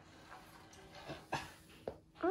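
Kittens at play on a laminate floor: faint scuffling, with three short, light taps in the second half.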